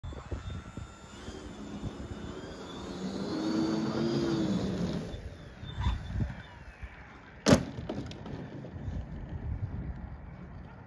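Electric motor and propeller of a model aircraft rising in pitch as it powers up for take-off, loudest about four seconds in, then falling away. A sharp thud about seven and a half seconds in as the plane comes back down on the runway. Wind buffets the microphone throughout.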